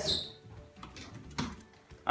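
A quiet pause in a small room: faint background noise with one sharp click or tap a little past the middle, and a softer tap shortly before it.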